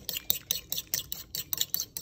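A metal fork whisking a raw egg in a ceramic bowl, its tines clicking against the bowl in a quick, even rhythm of about six strokes a second.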